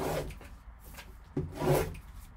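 Gloved hands rubbing and handling a shrink-wrapped cardboard card box on a table: two scraping rustles, one at the start and a longer one near the end, with soft knocks as the box is moved.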